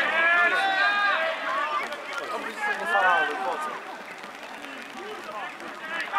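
Several men shouting over one another during a football match, their calls loudest in the first half and fading to scattered shouts after about three and a half seconds.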